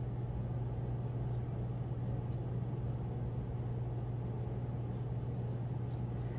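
A steady low hum runs throughout, with a few faint crisp ticks and rustles as a sheet of construction paper is folded back and pressed flat by hand.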